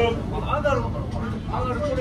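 People talking in a busy restaurant over a steady low rumble of room noise.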